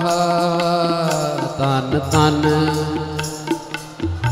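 Shabad kirtan: a singer holds a long steady note, then moves to a new pitch about two seconds in, over a sustained harmonium drone and light tabla strokes.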